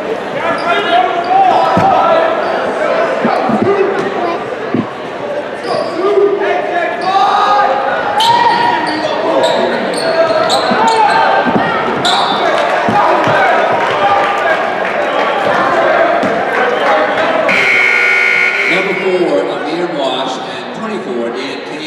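Basketball game sounds in an echoing gym: spectators' voices and shouts, a ball bouncing on the hardwood, and short shoe squeaks. A loud buzzer sounds for about a second and a half near the end.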